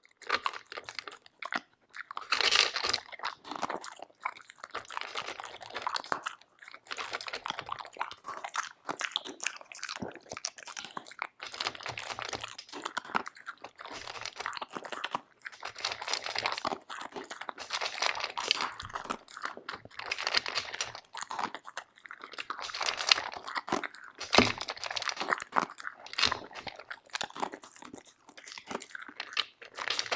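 A Samoyed eating dry kibble from a plastic slow-feeder bowl, picked up close: a steady run of crunching and chewing that comes in bursts with brief pauses.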